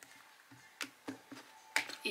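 A deck of tarot cards being handled: about six light clicks and taps as the deck is cut and a pile is laid on the table, the loudest a little under a second in and near the end.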